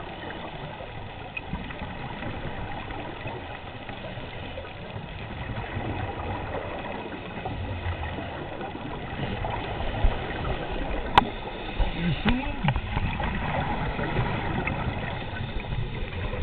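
Muffled underwater noise heard through a camera's waterproof housing: scuba divers breathing through their regulators and exhaling bubbles. It grows a little louder in the second half, where a few sharp clicks come through.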